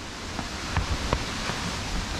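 Steady rushing of a nearby waterfall, with a few faint taps.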